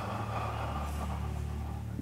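A large congregation breathing together, a soft airy rush of many breaths over a steady low hum of the hall.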